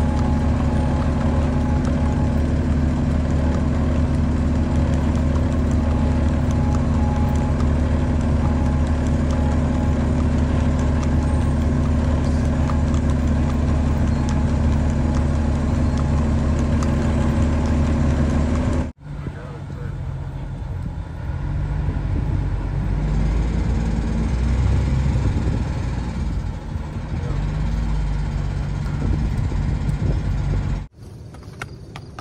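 Engine of the vehicle filming from the road, heard from inside as it creeps along at low speed, running at a steady pitch. About two-thirds of the way through the sound cuts off abruptly, and it resumes with an engine note that rises and falls.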